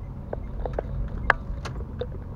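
Steady low rumble of a car driving, heard from inside the cabin, with a few sharp irregular clicks and knocks, the loudest just past the middle.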